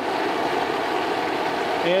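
Propane turkey-fryer burner running steadily under the pot of frying oil, a continuous even noise without breaks.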